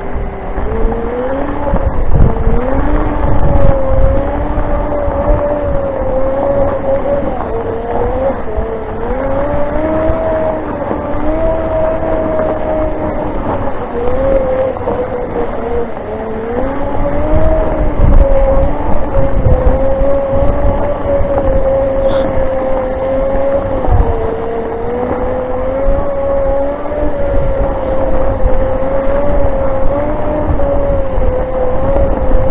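Off-road Segway's electric drive whining continuously, its pitch rising and falling as the speed changes, over a low rumble.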